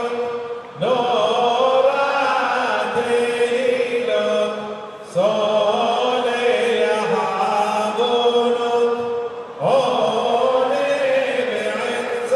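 Voices chanting Selichot penitential prayers in long, held phrases, each phrase starting afresh three times: about a second in, about five seconds in and near ten seconds in.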